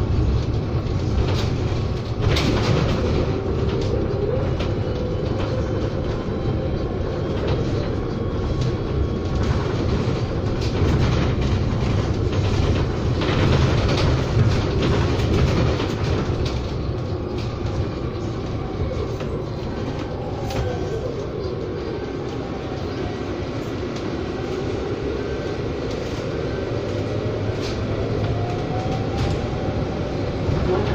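Cabin ride noise of a Proterra BE40 battery-electric bus under way: steady road rumble with frequent rattles from the body and fittings. A faint electric-drive whine rises and falls, climbing in pitch near the end.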